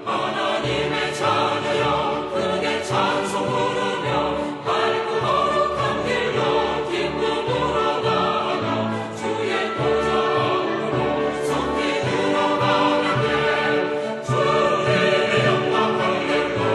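Choral music: a choir singing without a break.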